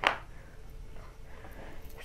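A single short knock right at the start, a metal spoon against a glass bowl as banana paste is spooned in, followed by faint handling sounds.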